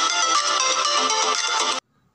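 Intro music with many quick high notes, cutting off suddenly near the end.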